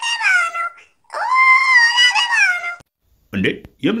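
Two long, high-pitched wailing cries that waver in pitch, the second lasting about a second and a half; a lower voice starts talking near the end.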